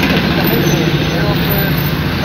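Steady low engine and street-traffic noise heard from inside a car cabin.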